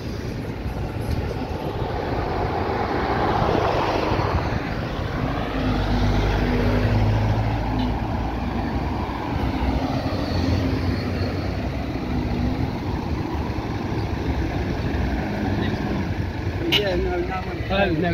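Road traffic: several cars and a van passing close by one after another, the engine hum and tyre noise swelling and fading with each pass.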